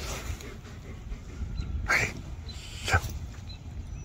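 German Shepherd dog giving short, sharp vocal calls, one at the start and another about three seconds in, over a steady low rumble, with a man's brief "Hey" to the dog between them.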